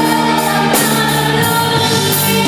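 Female lead singer performing live into a handheld microphone, holding long notes over a full band with drums and electric guitar.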